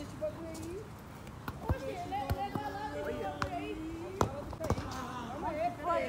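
A football being kicked on grass: several sharp thuds of foot striking ball, the loudest about a second and a half and about four seconds in. Players' voices call out in the background.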